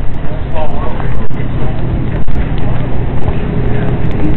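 A loud, steady low rumble, with a person's voice briefly about half a second in.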